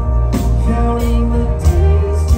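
Live metalcore band playing a song through a concert PA, heard from the audience: heavy bass, drums with cymbal hits, guitars and a male singing voice.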